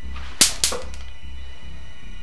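Two sharp cracks about a quarter of a second apart, a little under half a second in, over a low pulsing dark music score.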